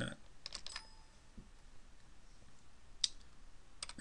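A few isolated computer keyboard keystrokes, faint and spaced out: a cluster about half a second in, a sharper one about three seconds in and another near the end. They are field entries being typed into drill-hole software.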